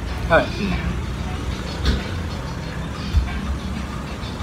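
Steady low rumble of road traffic, with two short knocks about two and three seconds in.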